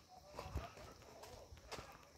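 Faint footsteps and leaves brushing past as someone walks through tall leafy plants, with two or three soft knocks of steps about a second apart.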